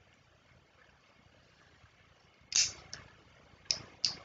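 Quiet room tone, then a short hissy rustle about two and a half seconds in, followed by a couple of sharp clicks near the end.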